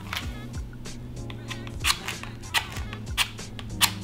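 Soft background music under a few sharp little clicks and rustles from a small box of wooden matches being handled as a match is drawn out.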